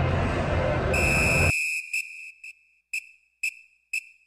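A busy crowd murmur on the stadium field cuts off abruptly about a second and a half in. Overlapping it, a steady high whistle tone starts and then breaks into a string of short, fading echoed repeats about twice a second.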